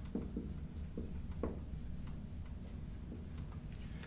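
Marker writing on a whiteboard: a run of short, faint strokes that thin out after the first second and a half.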